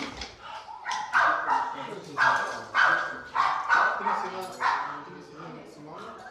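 A dog barking repeatedly: about seven sharp barks, half a second to a second apart, stopping about five seconds in.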